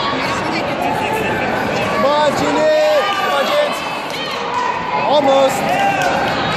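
Crowd of spectators and coaches talking and calling out in a large gym hall: many voices overlapping, with louder shouted calls about two seconds in and again near the end.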